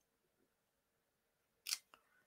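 Near silence, then near the end a short sharp click and a fainter second click as a clear acrylic stamping block is lifted off card stock.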